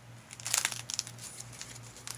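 Thick, stiff collaged paper pages of a junk journal crinkling and rustling as a page is turned by hand. The crackle is loudest about half a second in, then settles to a soft rustle.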